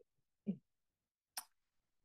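Near silence in a pause between speech: room tone, with one brief faint low sound about half a second in and a single faint click a little past the middle.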